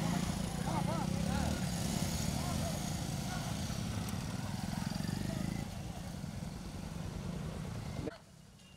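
Several small motorcycle and scooter engines running at low speed close by, a steady mixed engine drone that eases a little near the end. People's shouting voices are mixed in over the first couple of seconds.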